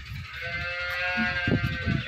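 A young calf bawling: one long call held at a steady pitch for well over a second.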